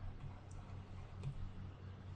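Steady low electrical hum from the recording setup, with two faint clicks, about half a second and a second and a quarter in.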